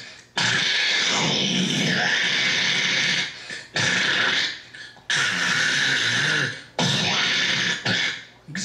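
A man making vocal sound effects into a microphone cupped against his mouth: four long, noisy rushing blasts, each one to three seconds, with short breaks between.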